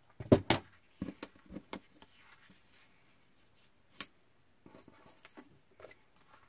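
Sheets of patterned cardstock and a photo mat being handled and laid down on a table: short taps and rustles of paper, the loudest a cluster about half a second in, with a single sharp tap about four seconds in and a few small ones near the end.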